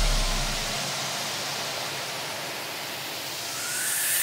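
A hiss of electronic noise carries a break in the dance track. The bass dies away in the first second, the hiss dips and then swells back up near the end, and a faint rising tone leads back into the music.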